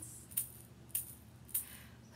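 An egg shaker shaken on the beat: two crisp rattling shakes about half a second apart, then a fainter third one.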